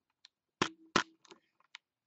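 A scatter of sharp clicks and knocks, the loudest two close together just past the middle, followed by a few lighter ticks: handling noise as the nest webcam is adjusted.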